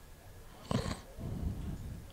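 A short, sharp breath or sniff close to the microphone, followed by low rumbling on the mic.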